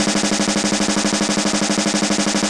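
Snare drum roll, a rapid even run of strokes with a steady low note held underneath, playing loudly without a break.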